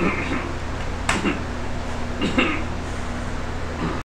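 A few short vocal sounds from a person, near the start, about a second in and a little past two seconds, over a steady low hum of room noise.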